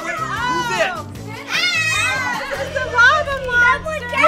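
Children's voices shouting and squealing in high, rising-and-falling calls during play, over background music whose steady low notes come in a little past halfway.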